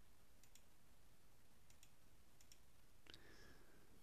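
Near silence: a low hiss with a few faint, brief clicks.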